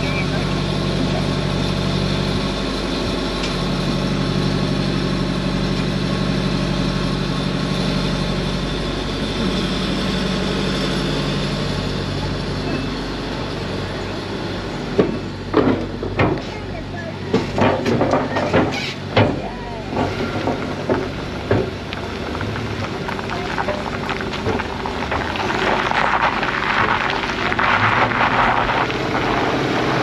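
Four-wheel drive and caravan engine running steadily at low speed. About halfway through comes a run of sharp clunks as the tyres roll over the timber deck boards and ramp of a river ferry. Near the end this gives way to steady tyre noise on a dirt road.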